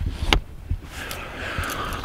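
Wind rumbling on the microphone, with a single sharp knock near the start.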